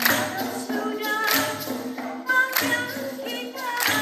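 Dikir barat chorus singing together in Malay, with hand claps striking through the chant every second or so.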